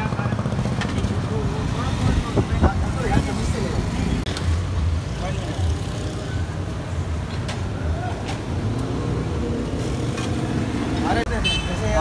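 Busy street ambience: a steady rumble of road traffic with indistinct voices of people nearby and a few short clicks.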